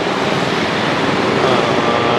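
Steady city street traffic noise, a continuous rush of passing vehicles.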